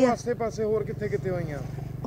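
A vehicle engine running steadily at a low pitch, under softer speech.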